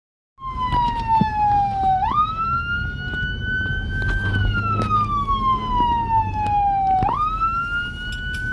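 Whelen 295SL100 electronic siren sounding a wail, its pitch sliding slowly down, up and down again in long cycles of about five seconds, over the low rumble of the moving vehicle.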